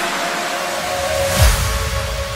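Electronic dance-rap track in a breakdown: the kick drums have dropped out, leaving held synth tones over a noisy wash, with one deep bass hit falling in pitch about one and a half seconds in.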